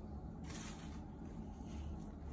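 Quiet room tone: a steady low hum, with a faint short hiss about half a second in and again near the end.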